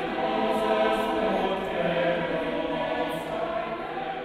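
A choir singing long, sustained chords, slowly getting quieter.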